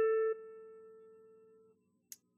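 A single electric guitar note, an A at the 10th fret of the second (B) string, ringing out. About a third of a second in it drops sharply in level, then dies away over the next second and a half.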